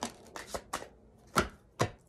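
Tarot cards being handled and shuffled: about five sharp taps and slaps of the cards, the two loudest in the second half.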